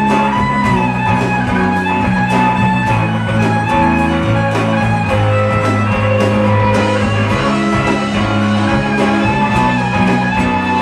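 Live band playing with fiddle, acoustic and electric guitars, bass and drums, with no singing.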